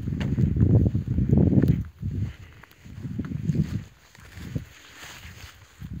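Muffled low rumbling from wind and handling on a phone microphone while walking over rough ground, coming in uneven gusts. It is loudest in the first two seconds, then comes back in weaker bursts.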